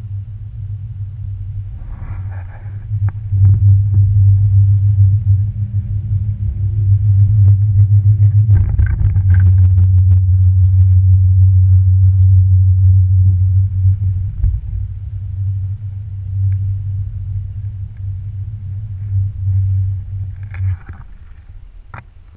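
Loud, steady low rumble heard from a moving chairlift chair. A few clicks and a brief jolt come about nine seconds in, and the rumble drops away near the end.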